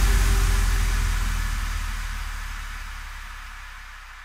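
The closing tail of an electronic house track: a wash of white-noise hiss over a low bass note, fading away steadily after the beat has stopped.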